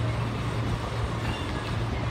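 Steady low background hum with a faint even hiss, no distinct event standing out.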